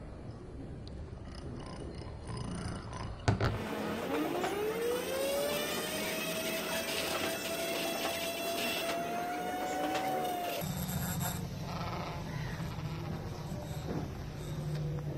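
Small 12 V DC motor salvaged from a car CD player, spinning up a metal gyroscope flywheel disc: a whine that climbs quickly in pitch after a sharp click, then holds steady and creeps slightly higher as the disc nears full speed. It cuts off suddenly about ten seconds in.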